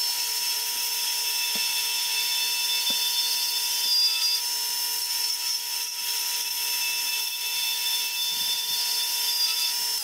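Lathe turning of a perspex (acrylic) cylinder: a hand-held turning tool cutting the spinning acrylic makes a steady, high-pitched whine and hiss over the lathe's running hum.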